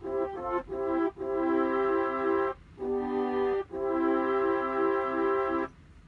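Korg Pa1000 keyboard playing a just-loaded horns (brass) SoundFont sample: a few short chords, then three longer held chords with brief breaks between them.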